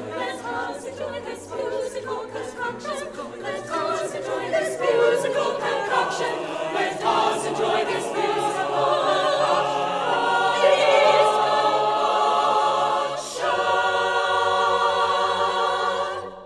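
Mixed choir singing a cappella, a busy Renaissance madrigal passage in many moving voices, then, after a brief break near the end, one full chord held steady as the final cadence.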